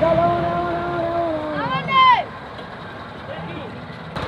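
Onlookers shouting in long drawn-out calls, a held cry and then a rising-and-falling yell about two seconds in, over the steady rumble of a Massey Ferguson 385 tractor's diesel engine hauling an overloaded sugarcane trolley. The shouting stops after the yell and the engine carries on more quietly.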